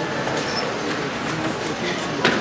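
Indistinct murmur of voices with a few small knocks and rustles, no music playing.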